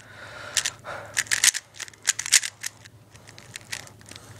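Layers of a magnetic 3x3 speed cube with one corner piece missing being turned fast by hand: short clicking turns in irregular quick bursts.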